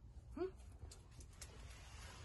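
A short, rising, questioning "hmm?" in a person's voice about half a second in. It is followed by faint scattered clicks and a brief soft hiss near the end.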